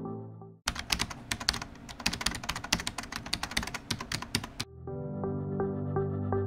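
Computer-keyboard typing sound effect: a fast run of key clicks lasting about four seconds. Background music fades out just before the clicks and comes back after them.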